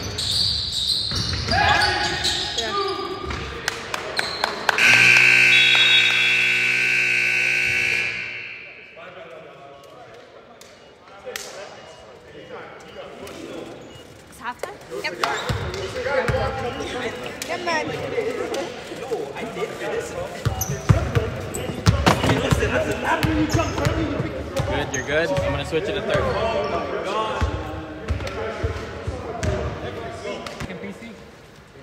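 Gym scoreboard buzzer sounding for about three seconds, about five seconds in, marking the end of the second quarter. It comes after a stretch of basketball bouncing and sneakers squeaking on the hardwood; voices and more ball bounces carry in the echoing hall afterwards.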